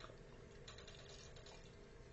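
A faint fizz of IPA being poured into a glass, slightly louder from just under a second in.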